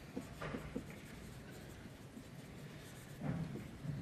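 Dry-erase marker writing on a whiteboard: short, faint scratching strokes as letters are drawn, with a brief low hum about three seconds in.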